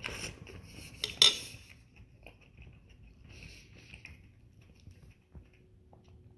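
A metal spoon clinking on dishware, loudest with one sharp clink about a second in, followed by faint eating sounds as a mouthful of cabbage soup is chewed.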